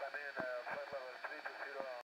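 A voice transmission coming through a handheld radio scanner's small speaker, with a faint steady high-pitched whine running under it.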